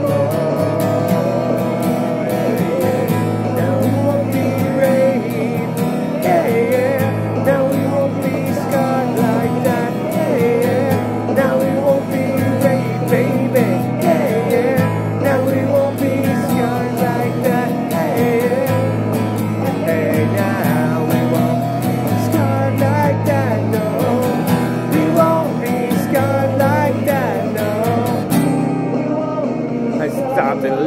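Steel-string acoustic guitar strummed in time with a recorded rock song, with singing over it. The music thins near the end.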